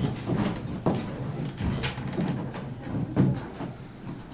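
A wooden door being opened: the handle and latch clicking, with several short knocks and thuds.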